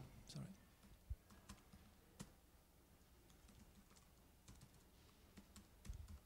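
Faint, sparse clicks of a laptop keyboard, a handful of separate keystrokes scattered over several seconds.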